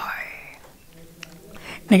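A man's speech trailing off into a breathy pause with a faint low hum and a single small click, then his voice starting again near the end.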